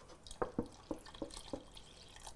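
Water poured from a plastic gallon jug into a steel pot of broth, glugging as it goes: about five short gurgles, starting a little under half a second in.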